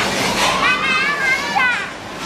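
Children shouting and squealing at play, with high, wavering voices over a background hubbub of other voices.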